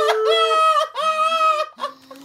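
High-pitched, squealing laughter from a laughing fit, in about three long shrieking whoops with a second voice underneath, breaking off near the end.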